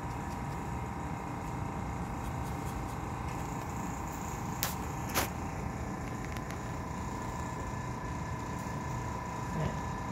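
Steady background hum of a workroom with a faint steady tone, broken by two short clicks about half a second apart halfway through.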